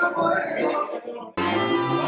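Live Cuban band music in a crowded bar. It dips about a second in, then breaks off abruptly and jumps to another passage of the band playing.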